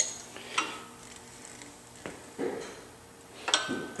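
Engine stand's rotating head turning a bare V8 short block over: a handful of separate metallic clinks and clunks from the stand and block.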